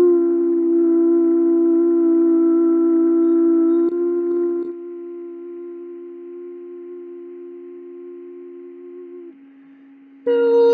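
A man's voice humming one long, steady note over a constant lower drone tone. The note grows softer about four seconds in and stops shortly before the end, leaving only the drone.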